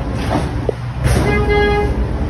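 A short car horn toot, a single steady note about half a second long, a little past a second in, over a low, steady traffic rumble.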